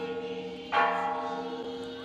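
A very large temple bell ringing. It is struck again about three-quarters of a second in, and its many steady tones slowly die away.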